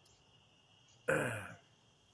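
A man clears his throat once, briefly, about a second in. Behind it a faint, steady chorus of crickets chirps.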